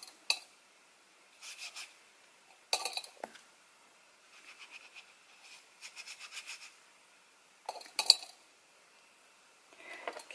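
Painting supplies handled on a worktable: scattered light clinks and knocks, clustered near the start, a few seconds in and again near the end, with a run of soft quick taps in the middle.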